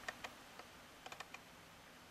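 Near silence with a few faint, light clicks from an M1 carbine being handled, a couple just after the start and a small cluster about a second in.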